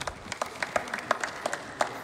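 Applause from a small group of people clapping, with individual hand claps standing out distinctly and irregularly.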